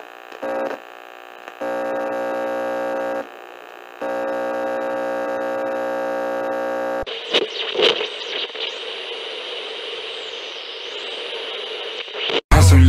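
An electronic buzzing tone sounds twice, for about a second and a half and then about three seconds, followed by radio static with a faint sweeping whistle, like a radio being tuned, which cuts off suddenly near the end.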